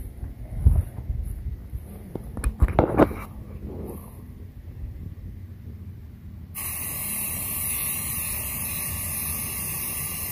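A few thumps and knocks, then about two-thirds of the way in a Rust-Oleum Army Green camouflage aerosol spray paint can starts spraying with a steady hiss.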